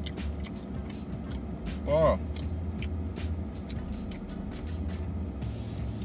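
Close mouth sounds of someone chewing a soft pretzel: short wet clicks and smacks, over background music with a steady low beat.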